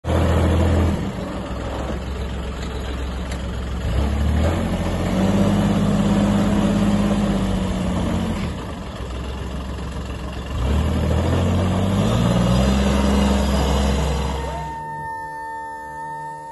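Utility vehicle's engine running as it is driven, its pitch and level rising and falling as it speeds up and eases off, with louder stretches about four seconds in and again about ten and a half seconds in. Near the end the engine sound drops away and a steady high tone takes over.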